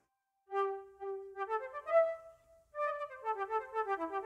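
Pan flute playing a melody. After a short silence it plays separate notes stepping upward, then breaks into a quicker run of notes in the second half.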